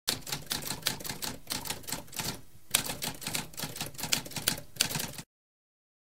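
Typewriter keys typing in a quick run of clacks, with a short break about halfway, then stopping abruptly shortly before the end.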